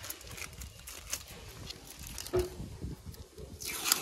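Brown masking tape being peeled by hand off a rubber tractor tyre's sidewall: faint scattered crackling, then a rising tearing rustle in the last half second. A brief louder knock comes a little past halfway.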